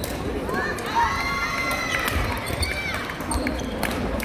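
Badminton rally on a wooden sports-hall court: shoes squeaking in high, short squeals as players move and lunge, mostly in the first three seconds, with a few sharp racket hits on the shuttlecock and dull footfalls.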